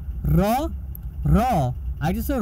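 Speech: a person speaking two drawn-out syllables, over a steady low hum.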